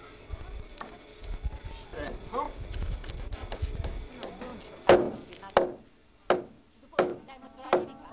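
Five loud, evenly spaced strikes on the timber roof beams, about two-thirds of a second apart and starting about five seconds in: a hammer driving nails into the framing, each blow with a short ring. Before them, faint voices over a low rumble.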